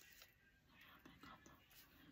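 Near silence, with faint whispering.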